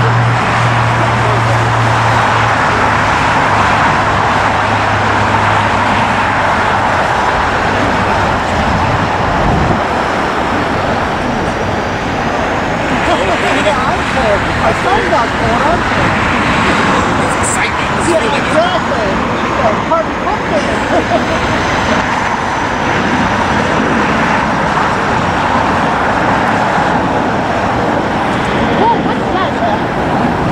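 Steady loud roar of engine noise: the jet engines of a taxiing Airbus A380 blended with road traffic. A low steady hum fades out over the first several seconds.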